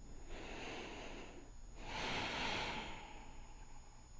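A person breathing close to the microphone: two slow breaths, the second louder and longer.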